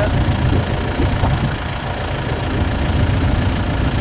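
A tractor engine idling steadily, a continuous low rumble.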